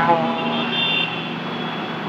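Road traffic running on the street below, with a short high tone in the first second.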